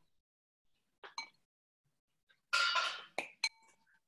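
A metal spoon clinking against a glass bowl: a couple of light ringing clinks about a second in and two more near the end, with a brief scraping rustle between them.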